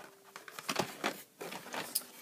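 Carded Hot Wheels packages, plastic blisters on cardboard backs, crinkling and clacking against each other as they are handled and pulled out of a cardboard box: a handful of short, sharp crackles.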